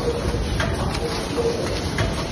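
Multihead tea pouch packing machine running, a short hum and click repeating about every 0.7 s as each pouch is made.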